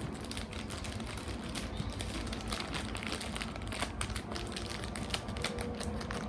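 Scattered small, irregular clicks over a low steady background noise.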